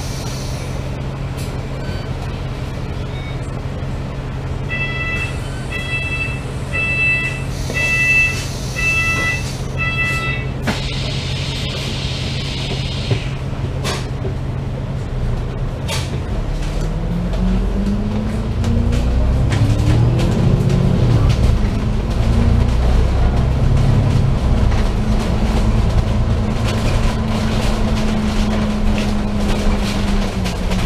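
Double-decker bus engine idling at a stop, with a run of about six electronic beeps and then a short hiss of compressed air. About halfway through the engine revs up with a rising tone as the bus pulls away, dips once at a gear change, and settles into a steadier, louder run.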